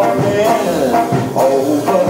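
Live ska band playing: saxophone and trombone over keyboard, electric guitar, bass and drums, with a steady beat.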